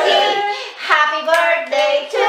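Women's high voices singing, without instrumental backing.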